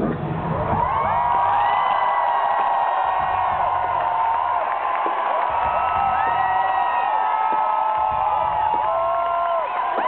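Loud concert crowd cheering and screaming at close range, many high voices overlapping, with the band's music playing underneath.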